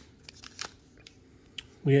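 A few light clicks and rustles as a stack of baseball trading cards is pulled from a freshly torn pack wrapper and handled, mostly in the first second.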